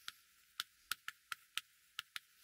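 Chalk on a blackboard as a word is written: a quick, irregular series of light clicks, about seven in two seconds.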